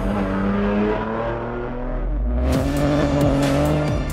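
Peugeot 208 Rally4 rally car, with its turbocharged three-cylinder engine, driving on track, mixed with background music. A beat with sharp percussive clicks comes in about two and a half seconds in.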